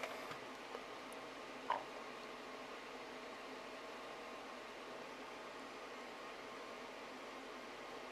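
Faint steady hiss of room tone, with one brief small sound about two seconds in.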